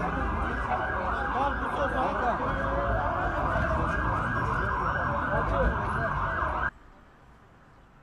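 Emergency vehicle siren sounding a fast yelp, rising and falling about three times a second, over the voices of a crowd. It cuts off suddenly near the end, leaving only faint background.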